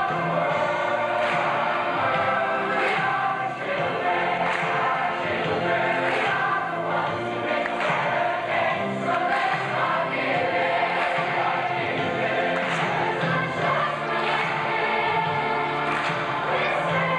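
A large choir singing together, continuously through the whole stretch.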